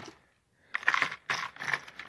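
Hard plastic fishing lures and their treble hooks clicking and clattering against a clear plastic tackle box tray as they are handled. A brief hush comes first, then a quick run of clicks.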